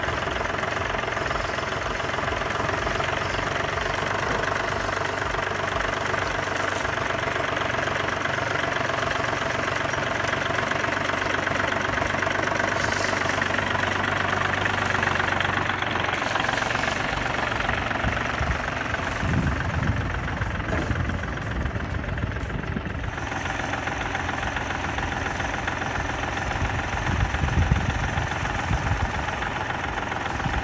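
Kubota L1-225 small diesel tractor engine running. It gives a steady drone through the first half, then its note changes to a rougher, uneven low rumble, with a few louder knocks near the end.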